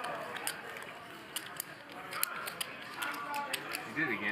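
Poker chips clicking against one another in irregular light clicks over low table chatter.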